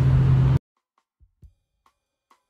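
Steady in-cab road and engine drone of a 2002 Ford F-150 at cruising speed, which cuts off abruptly a little over half a second in. After the cut come faint end-card music with a few soft kick-drum beats and light ticks.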